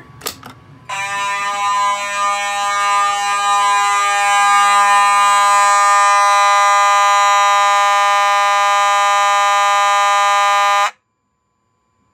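A pull station's handle clicks as it is pulled, then a Simplex 9217 horn/strobe sounds one steady horn tone for about ten seconds and cuts off suddenly, following the California code pattern. It is fed filtered DC through a DC-to-DC filter, so its tone is clean and much less raspy than on full-wave rectified current.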